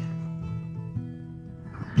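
Acoustic guitar playing softly in a gap between sung lines, its chord ringing and fading, with a new note struck about a second in.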